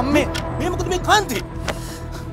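Background music with a steady held tone, under short raised-voice exclamations that rise and fall in pitch, strongest about a second in.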